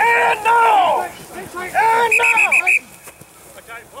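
Rugby players shouting during a maul, two long, loud drawn-out shouts with a short gap between them. After the second shout it drops to quiet shuffling.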